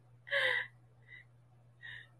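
A woman's breathy laughter between words: one short gasping breath about half a second in, then a faint breath and another short gasp near the end.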